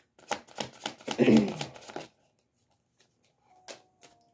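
A deck of tarot cards being shuffled by hand, overhand style: a fast run of card flicks and riffles for about two seconds that then stops. A single light tap comes near the end.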